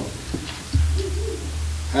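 A man's low, closed-mouth hum of hesitation, an 'mmm', picked up close on a handheld microphone, starting about three-quarters of a second in and held steady for just over a second.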